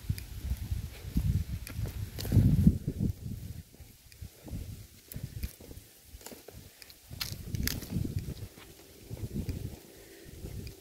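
Footsteps on dry, cracked mud, heard as uneven low thuds with a low rumble on the microphone, and a couple of sharp clicks about seven seconds in.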